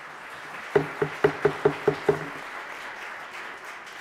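A man laughing in a quick run of short 'ha' pulses for about a second and a half, over a steady hiss of crowd noise like applause filling a large hall.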